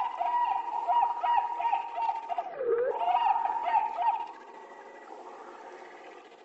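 Beatless electronic music outro: a rapid warbling, chirping synth-like tone holding around one pitch, with one swoop down and back up in pitch partway through. It falls away to a faint hiss about four seconds in.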